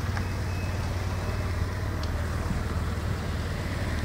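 A motorcycle engine idling, a steady low running sound with a fast, even pulse.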